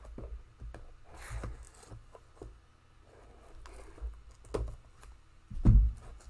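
Hands handling a cardboard box of trading-card packs: scattered light taps and scrapes, with one louder dull thump near the end.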